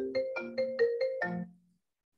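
A phone alarm ringtone plays a quick melody of short ringing notes. It cuts off abruptly about one and a half seconds in as it is switched off.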